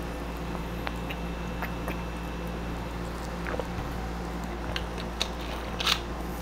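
Quiet eating and drinking mouth sounds, with faint small clicks of swallowing and smacking, over a steady low hum. A sharper click comes near the end as the plastic drink bottle is set down on the desk.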